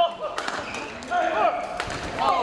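Badminton hall ambience: shoes squeaking on the court mats, a few sharp racket-on-shuttlecock hits, and voices from the surrounding courts.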